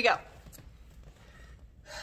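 A woman's voice ends a word, then the room goes quiet for over a second with faint paper handling as a hardcover picture book is turned round and opened.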